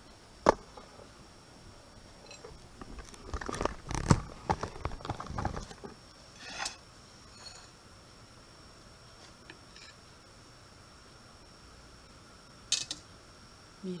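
Kitchen knife and ceramic plate clicking, knocking and scraping while a cake is cut into slices: one sharp click about half a second in, a run of knocks and scrapes from about three to six seconds, and another couple of clicks near the end.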